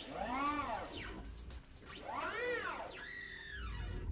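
Synthesizer sound design: three swooping tones that rise and fall in pitch over a low rumble.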